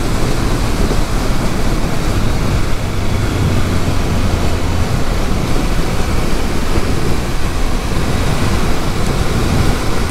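Wind rushing over the microphone of a riding motorcycle at road speed, with the Triumph Speed Triple 1200 RS's three-cylinder engine running underneath; a steadier low engine tone stands out from about three to five seconds in.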